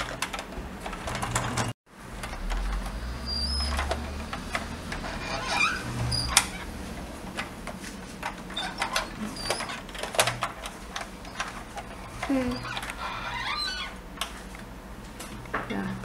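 A plastic toy Land Rover handled on a wooden table, its wheels rolling with a low rumble, and scattered clicks and knocks of hard plastic as a trailer is hitched on.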